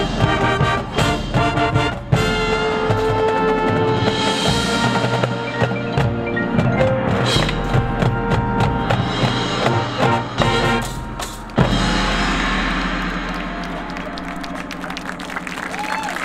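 Marching band playing: brass with a drumline and front-ensemble mallet percussion such as marimbas, full of sharp percussive hits. A strong hit comes about eleven and a half seconds in, followed by a held sound that gradually gets quieter.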